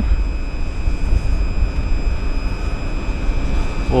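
Wind rumbling and buffeting on the microphone, with a faint steady high-pitched whine throughout.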